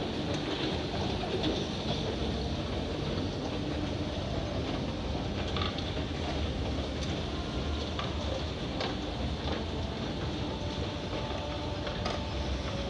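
Escalator running under the rider: a steady mechanical rumble with a few light clicks scattered through it.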